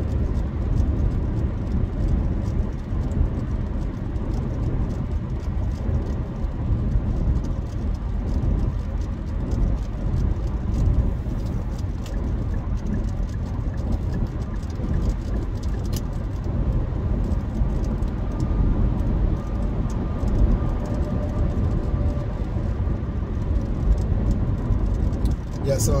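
Steady low road and tyre rumble inside the cabin of a car driving along a highway.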